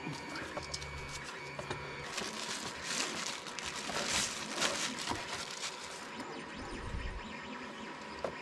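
Rustling and crinkling of soft protective packaging as a document camera is lifted out of its foam-lined box and its wrap pulled off, with small irregular clicks and knocks from the camera's metal arm being handled.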